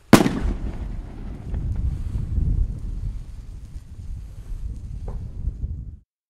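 Single loud bang of a Zink 910 200-gram firework rocket bursting overhead, just after the start, followed by a low rumble lasting several seconds with a few faint cracks.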